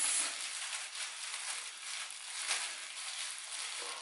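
Thin plastic gloves crinkling and rubbing against hair in irregular rustles as the locs are handled and parted.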